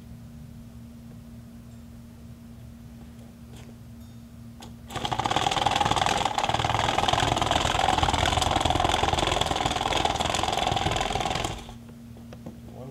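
Home-built WALL-E track drive running: an NPC 2212 DC gear motor, fed only 6 volts for testing, driving plastic conveyor track over cast urethane rubber wheels and sprockets. It starts suddenly about five seconds in, runs steadily for about seven seconds, and stops suddenly near the end.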